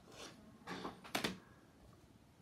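A plastic card holder being lifted off a wooden display stand: a few faint scrapes of plastic on wood, and one sharp click a little over a second in.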